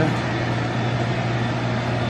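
Steady low mechanical hum over an even background noise: the running equipment of a convenience store, with its refrigerated cases and hot dog roller grill.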